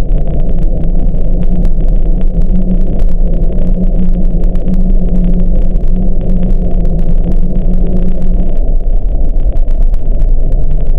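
Hydrophone recording of underwater volcanic tremor from the Volcano Islands chain south of Japan: a loud, dense, continuous low rumble with a steady drone in it that weakens about eight and a half seconds in.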